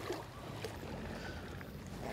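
A distant boat engine running with a faint, steady low hum over quiet seashore ambience.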